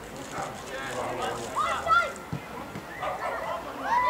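Footballers shouting and calling to each other across the pitch during play: short, scattered voices heard from a distance over open-air background noise.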